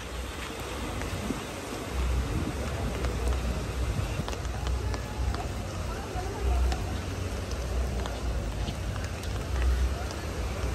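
Rain and floodwater running through a sand channel on a beach, a steady wash of noise with small scattered drips and splashes. Wind gusts rumble on the microphone a few times.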